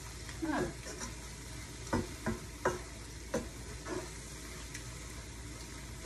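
Food sizzling steadily as it fries in a nonstick pan while a wooden spatula stirs it, with several sharp taps of the spatula against the pan about two to three and a half seconds in.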